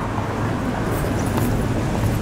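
Steady traffic noise: a low, even rumble of vehicles with no distinct events.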